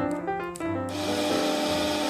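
Street sweeper sound effect: a steady rushing noise that starts abruptly about a second in, over piano background music.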